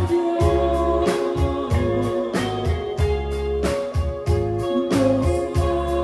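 Live band playing through the stage PA: electric guitars, keyboard and bass over a steady drum beat, with a voice singing.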